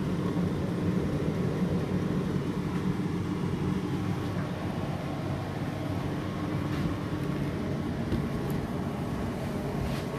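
Hotpoint NSWR843C front-loading washing machine in its final 1200 rpm spin, the drum and motor running at a steady high speed with an even low hum.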